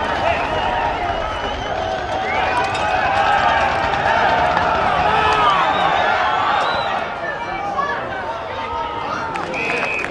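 Football crowd noise: many indistinct voices shouting and calling over one another during play, with no single clear speaker.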